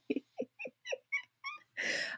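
A woman laughing helplessly without voice: a run of short, breathy, high-pitched bursts about four a second, trailing off, then a sharp breath in near the end.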